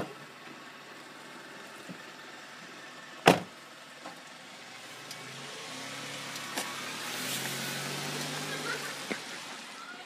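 A car door slams shut about three seconds in. Then an SUV pulls away and drives past, its engine and tyre noise swelling to a peak and fading as it goes.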